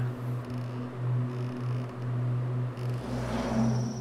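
A low, steady hum on the short film's soundtrack, wavering a few times a second, with a rising whoosh swelling about three seconds in.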